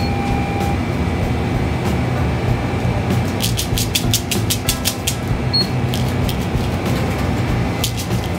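Light background music over a steady low hum, with a run of quick light clicks and taps from about three seconds in and a short high beep twice.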